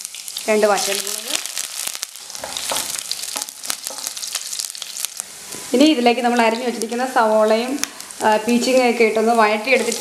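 Hot oil in a pan sizzling and crackling during a tempering, with sharp spluttering pops from mustard seeds as chopped aromatics, dried red chillies and sliced onions go in; the pops are densest in the middle. A voice is heard in short stretches near the start and through the second half.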